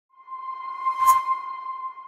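Logo-intro sound effect: a single steady high electronic tone, with a brief whoosh and low hit about a second in.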